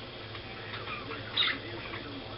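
Quiet room tone with a steady low hum, and one brief faint rustle about one and a half seconds in from a hand handling a plastic glue bottle.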